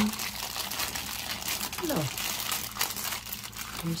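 Thin clear plastic wrapper bag crinkling steadily as a small plastic figure is pulled out of it by hand.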